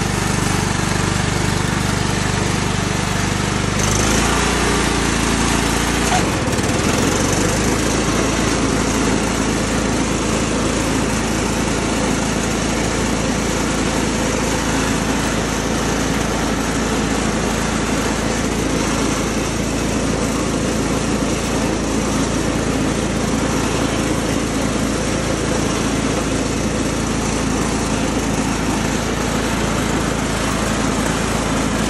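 Cub Cadet HDS 2135 lawn tractor's Kohler engine running steadily while it mows, with the PTO-driven deck blades engaged and cutting grass. The engine note changes between about four and seven seconds in, then holds steady.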